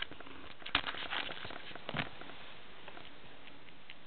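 Dry wood-shaving bedding rustling and crackling as a baby squirrel moves in it, with a flurry of sharp clicks and rustles from just under a second in to about two seconds in, then only a few faint ticks.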